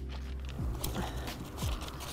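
Wind buffeting the microphone as a steady low rumble, with a few faint clicks and rustles about a second in.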